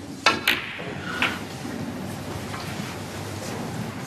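Snooker cue striking the cue ball, then a sharp ball-on-ball click and a further knock about a second in, over a quiet arena hush.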